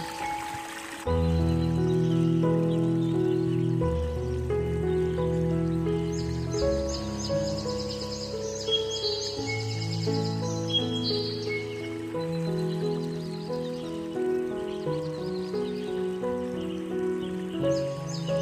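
Calm background music of sustained chords and low bass notes, changing every second or two, with high bird chirps mixed in.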